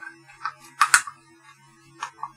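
Sharp plastic clicks from a black plastic power-adapter case being handled as a circuit-board module is pressed into it. There is a louder pair of clicks just under a second in, and a faint low hum runs underneath.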